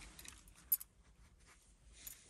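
Car key being handled at the ignition key cylinder as the master key is removed: one brief metallic click about three quarters of a second in, otherwise quiet.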